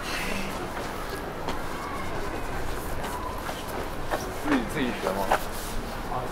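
Passersby talking as they walk past, their voices rising and falling and loudest near the end, over a steady low background hum.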